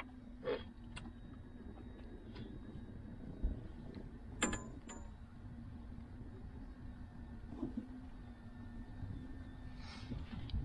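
Electric trolling motor humming steadily over low wind rumble, with a few light clicks and knocks from fish handling, one about four and a half seconds in carrying a brief high squeak.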